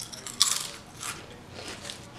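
A Lay's barbecue potato chip bitten and chewed close to the microphone: one loud crunch about half a second in, then a few softer crunches as it is chewed.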